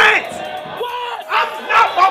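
A man yelling in excitement in short loud bursts, over a shouting crowd.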